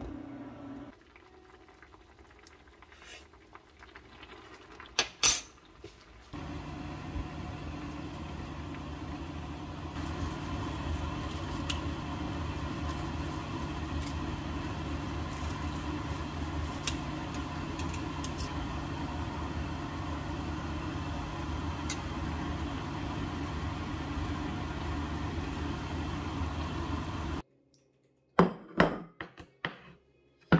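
Kitchen cooking sounds: a sharp clack about five seconds in, then a steady hiss with a low hum for about twenty seconds, ending in a sudden cut, followed by a few clinks of dishes near the end.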